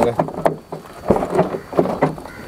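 A few short clicks and knocks from a hand working the tailgate release handle of a Renault Duster, mixed with brief bits of voice.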